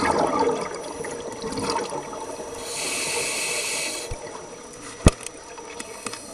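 Scuba diver breathing through a regulator underwater: a burst of exhaled bubbles gurgling at the start, then the hiss of an inhale through the demand valve for about a second. A single sharp click comes near the end.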